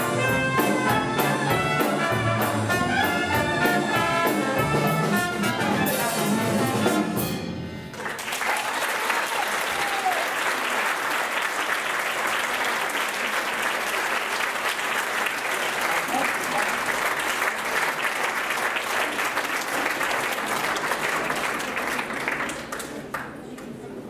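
A traditional jazz band (trumpet and trombone over grand piano, double bass and drum kit) plays the closing bars of a tune, finishing with a loud final chord about seven seconds in. The audience then breaks into steady applause.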